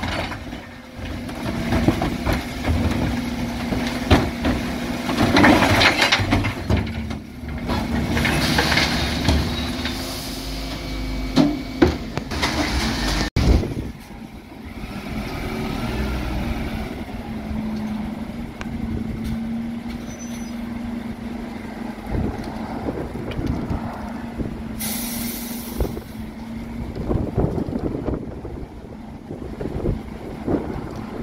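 Dennis Elite 6 refuse lorry running at the kerb, its engine humming steadily while the rear bin lift and body work, with several short clattering, hissing bursts in the first half. Near the end there is a sharp burst of air hiss, the lorry's air brakes releasing, and the lorry pulls away.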